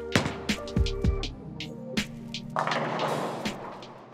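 Background music with a steady beat. About two and a half seconds in, a bowling ball strikes the pins: a noisy clatter of pins that lasts about a second. Most pins fall but not all, so the shot is not a strike.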